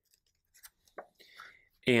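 Pages of a book being turned by hand: a few faint, short paper rustles and flicks.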